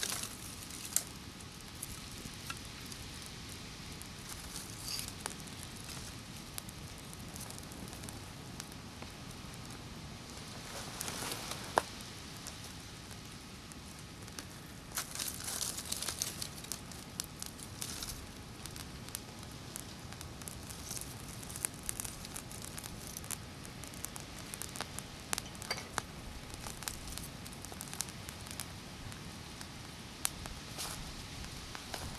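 A small kindling fire of dry sticks and shavings crackling lightly as it catches, with dry sticks rustling and snapping as they are handled and laid on it; the busiest rustling comes about 11 and 15 seconds in.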